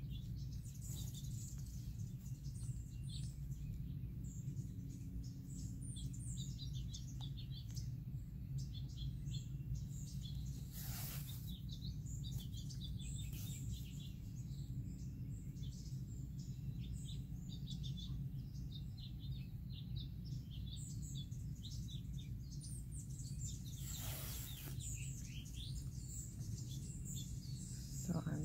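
Small birds chirping in the background, many short calls throughout, over a steady low hum. There are two brief rustles, about eleven seconds in and again near the end.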